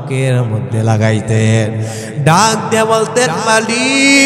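A man chanting a Bengali Islamic sermon (waz) in a melodic, sung delivery, holding drawn-out notes. His voice glides up in pitch about halfway through and settles into a long held note near the end.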